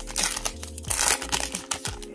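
Plastic foil wrapper of a trading-card pack crinkling in a quick string of sharp crackles as it is handled and opened.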